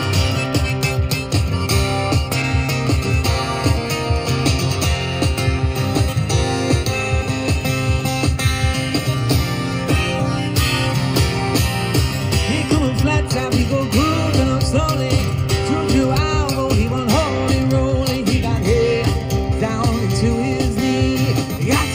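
Amplified Maton acoustic guitar strummed and picked steadily in a rock-blues groove. About halfway through, a man's voice joins, singing without clear words.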